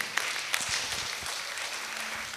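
Audience applauding: many people clapping at once, fairly steady.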